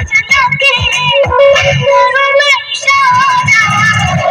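Recorded dance song playing loud: a sung melody over a steady, heavy beat.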